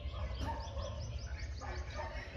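A bird calling outside: a quick run of short, falling notes about half a second in, over a steady low hum.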